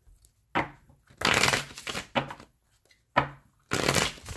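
A deck of tarot cards being shuffled by hand in several short bursts, with brief pauses between them.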